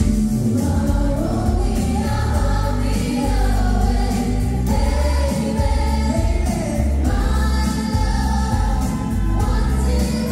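Live pop music: a mixed group of male and female singers singing together in harmony over a full pop backing with a strong bass line, loud and continuous.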